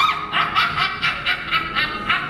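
A high voice giving a stage cackle: a shriek rising at the start, then a quick run of short 'ha' bursts, about six a second, over a held note from the accompaniment.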